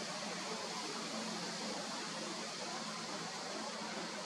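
Steady, even hiss of background noise with no distinct events in it.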